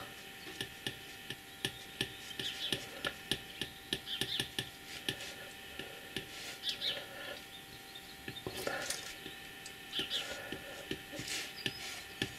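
Apple Pencil's plastic tip tapping and sliding on the iPad Pro's glass screen as short pen strokes are drawn. It makes a quiet, irregular run of light clicks, a few each second.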